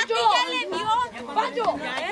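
Several people talking and calling out at once in excited, overlapping chatter.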